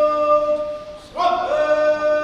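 Bugle sounding slow, long-held notes of a call. One note is held and fades, then about a second in a new note enters with a slight upward slide and is held.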